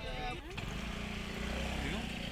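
Voices of a busy market crowd, then a knock about half a second in, followed by a steady low motor hum.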